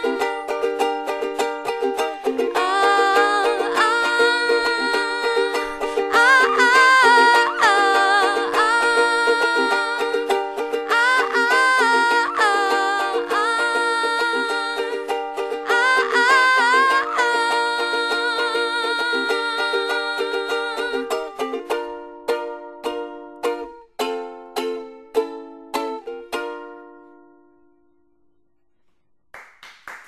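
A woman singing over a strummed ukulele. The voice stops about 21 seconds in, and the ukulele plays a few final chords that ring out and die away, ending the song.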